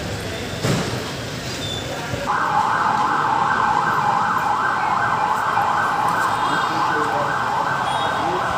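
An emergency vehicle siren starts about two seconds in and sounds in a fast yelp, a quick rising sweep repeated over and over, about two to three times a second. A brief thump comes just before it.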